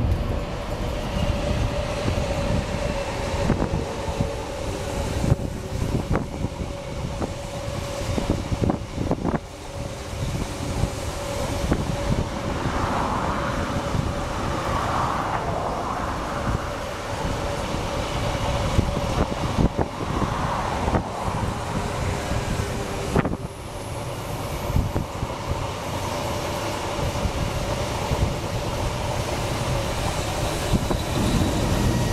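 A train running on rails: a steady rumble with a constant whine, and a few sharp clicks.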